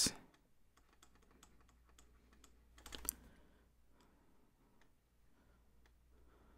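Faint, scattered clicks and taps from handwriting and drawing on a computer screen, with a short, louder cluster of clicks about three seconds in.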